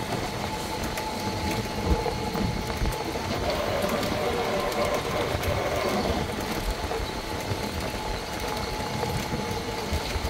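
Electric golf buggy driving along a paved path: a steady faint motor whine over a low rumble of tyres and wind, with small rattles.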